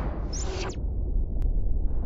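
Opening-title sound effects: a low rumble, with a brief high chirping sound about a third of a second in and a single click later, cutting off abruptly at the end.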